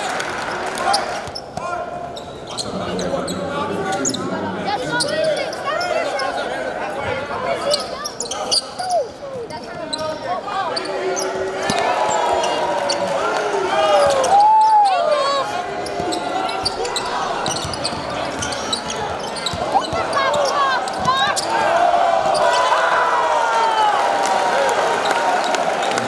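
Live basketball game sound in a gym: a basketball bouncing on the hardwood floor amid players' and spectators' voices calling out.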